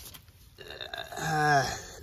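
A man's voice making one drawn-out wordless sound, about a second long, starting about halfway in.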